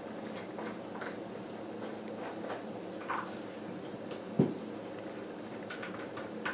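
Knife spreading peanut butter onto a silicone dog lick mat: faint scrapes and small taps, with one sharper knock about four and a half seconds in.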